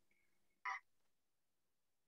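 Near silence: faint room tone, broken by one short faint blip a little over half a second in.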